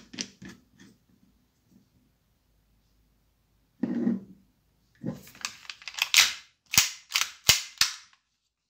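Hard plastic parts being handled on a table: a brief rustle about four seconds in, then a quick run of sharp clacks and knocks over the last three seconds, the loudest near the end, as 3D-printed compensators and the airsoft pistol are knocked against each other and set down.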